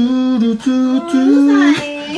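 A person humming a tune: a few held notes one after another, with a sliding note in the second half.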